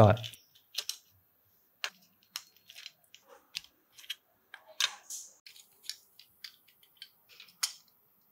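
Irregular light clicks, taps and scrapes of a small plastic pull-back toy car being taken apart by hand with a thin metal pin tool, with a louder click about five seconds in and another near the end.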